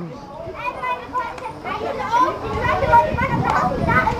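Several people's voices talking and calling out over one another, fairly high-pitched and indistinct, with no single clear speaker.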